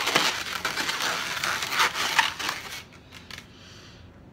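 Latex modelling balloons rubbing and scraping against each other in irregular bursts as a long 160 balloon is twisted and wrapped around a balloon sculpture, dying down about three seconds in.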